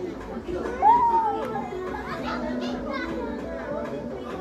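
Children's voices at play, chattering and calling over one another, with one loud high shout about a second in.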